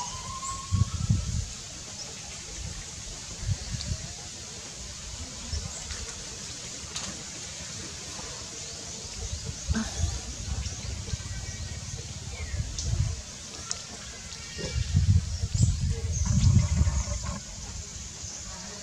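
Low rumbling buffets of wind on the microphone, coming and going several times, the longest and loudest near the end, with faint high bird chirps.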